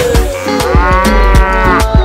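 A cow mooing once, a call about a second long that rises and falls in pitch, laid over a hip-hop beat with heavy bass kicks.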